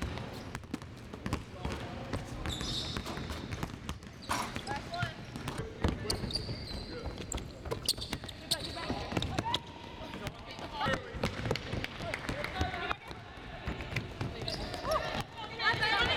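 Several basketballs bouncing on a hardwood court, many irregular bounces from more than one ball at once.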